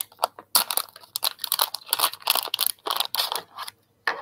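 A metallized anti-static plastic bag being pulled and torn open by hand, with irregular crinkling and crackling of the foil-like plastic.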